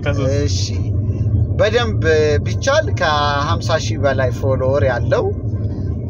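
A man's voice, some of it on long held notes, over the steady low rumble of a moving car heard from inside the cabin.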